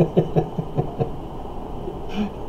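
A man chuckling: a run of short laughs, about five a second, that fades after about a second.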